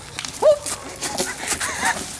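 A person's short rising yelp about half a second in, followed by scattered laughter and voices, with sharp clicks and rustles throughout.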